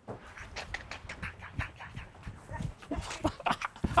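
Running footsteps on a hard floor, coming quicker and louder toward the end, with a man's heavy panting breath.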